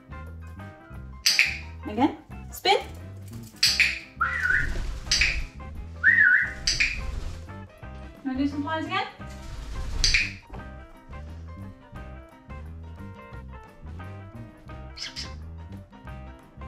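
White-capped pionus parrot giving about ten short, sharp calls, some of them whistled notes that waver or glide in pitch, bunched in the first ten seconds with one more near the end. Background music with a steady beat plays underneath.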